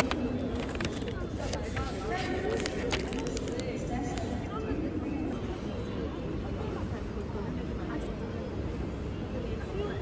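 Indistinct background chatter of people around, over a steady low hum, with sharp crinkling and clicking of a cardboard cookie box and wrapper being opened in the first few seconds.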